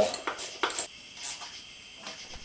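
Wrench and socket clinking on metal as intake manifold bolts are tightened: a few sharp, separate metallic clicks and taps.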